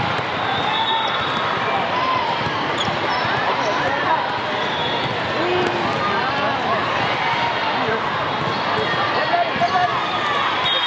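Indoor volleyball in a large, echoing hall: a constant din of many voices from players and spectators, with balls being struck and bouncing on the court floor.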